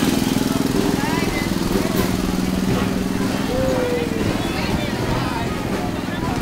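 Small engine of a ride-on mini kart running steadily, fading over the first few seconds as the kart moves off, with crowd chatter around it.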